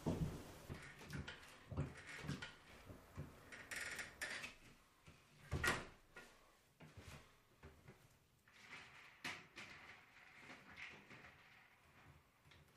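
Faint scattered knocks, clicks and rustles of a person moving about a small room and handling things, with one sharper knock a little before the middle.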